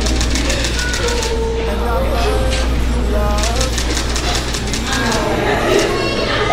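Indistinct voices over a steady low hum, with runs of rapid clicks.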